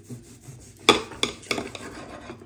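A knife slicing through roast beef on a ceramic platter with a light scraping, and three sharp clinks of the blade on the plate about a second in, the first the loudest.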